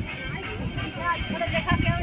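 People's voices talking close by, with a few dull knocks in the second half.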